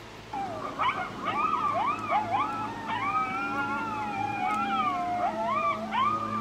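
A pack of coyotes howling and yipping: several voices gliding up and down over one another, starting a moment in, over a low steady hum.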